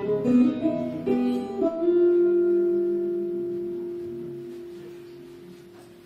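A small band of ukulele, archtop electric guitar and electric bass playing the last notes of a song: a few plucked notes, then a final chord that rings and slowly fades away over about four seconds.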